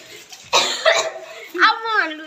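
People's voices in short exclamations: two breathy, cough-like bursts about half a second and a second in, then a pitched vocal exclamation near the end.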